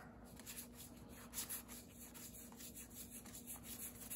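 Faint rubbing and sliding of trading cards being flipped through by hand, with a few soft ticks, over a faint steady hum.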